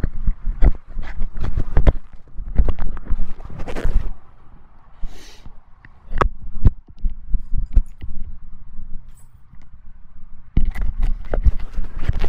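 Microphone handling noise: irregular knocks, clicks and rubbing with a low rumble, dense for the first four seconds, sparse in the middle and dense again near the end. This is a faulty or rubbing microphone.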